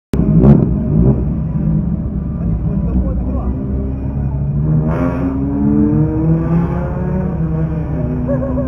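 Turbocharged Subaru Impreza GC8 flat-four engine running, heard from inside the cabin, with a sharp sound about half a second in and a short burst about five seconds in, after which the engine note rises slowly.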